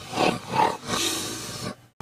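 A harsh, breathy roar or growl in three rough bursts, the last one longest, cut off abruptly near the end.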